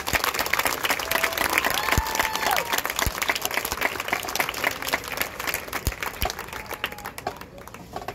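Audience in the stands applauding, with a few voices cheering in the first half, thinning out near the end.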